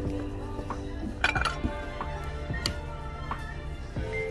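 Background music plays throughout. About a second in comes a sharp clink, like a china plate knocking against other dishes as it is lifted from the cart.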